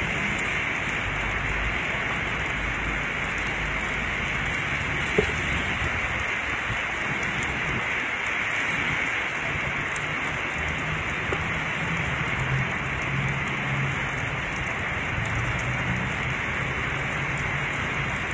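Steady rain falling on surfaces, with one sharp tap about five seconds in.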